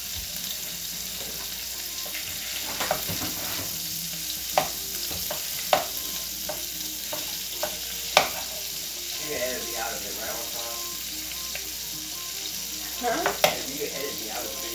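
Tortillas frying in butter in a skillet on a gas stove: a steady sizzle, broken by a few sharp clicks of a utensil against the pan.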